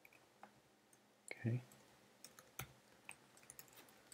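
Computer keyboard typing: faint keystroke clicks, a few scattered at first, then a quick run of keystrokes from about halfway through.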